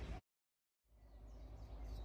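Faint outdoor background noise, broken about a fifth of a second in by a gap of total silence that lasts about two-thirds of a second, after which the faint background noise slowly returns.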